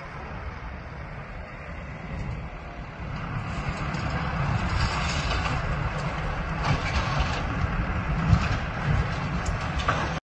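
A steady rumble and hiss that grows louder about three seconds in, with a few short knocks in the second half.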